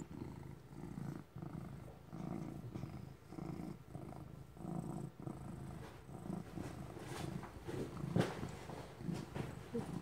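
A ginger cat purring steadily while being stroked, a low rumble that swells and eases with each breath, roughly once a second.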